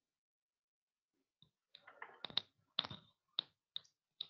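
Computer mouse clicking: a quick, irregular run of about eight sharp clicks, starting about a second and a half in.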